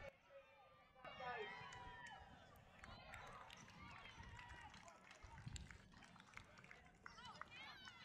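Faint, distant shouting and calling from junior rugby league players and sideline spectators, with a run of short, high calls near the end.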